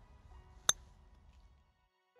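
A single crisp click of a golf hybrid's clubface striking the ball on a short putting-style stroke, about two-thirds of a second in. Faint background music plays under it.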